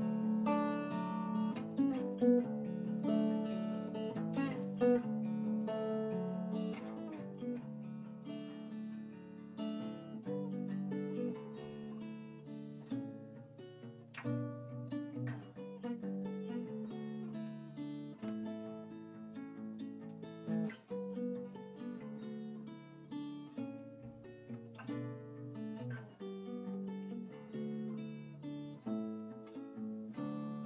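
Solo small-bodied acoustic guitar played fingerstyle: a continuous run of picked notes and ringing chords, loudest in the first few seconds and then settling to a softer level from about ten seconds in.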